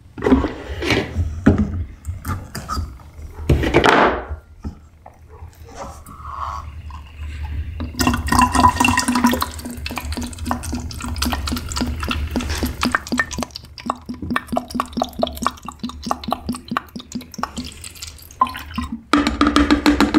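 Photographic bleach-fix concentrate being poured from an upturned plastic bottle into a collapsible plastic chemical bottle: a liquid pour that starts abruptly about eight seconds in and runs for about ten seconds.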